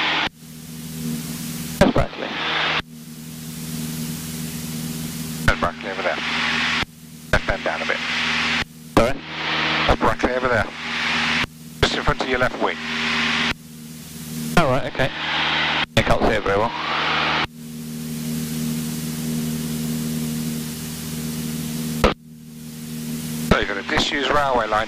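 Single-engine piston light aircraft's engine droning steadily at cruise inside the cockpit. Over it, bursts of intercom or radio hiss switch on and off abruptly several times, some carrying muffled voices.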